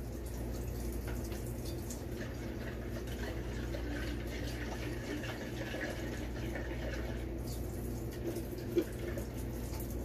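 Water trickling from a tap into a plastic bottle at a kitchen sink, as water is slowly added to build a neem oil emulsion, over a steady low hum. A short knock about nine seconds in.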